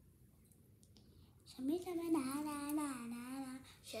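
A few faint clicks in near quiet, then a girl's voice holding one long wordless sung note for about two seconds that wavers and dips toward the end.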